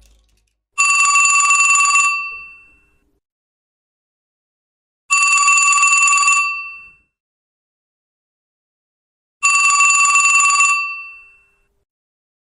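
Mobile phone ringing with a telephone-bell ringtone: three rings, each about a second and a half long and roughly four seconds apart, with silence between them.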